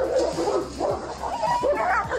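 Large dogs fighting: a rapid, overlapping jumble of short, high yelping cries.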